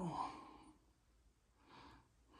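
A man's soft breath out, a sigh, near the end, in an otherwise quiet small room.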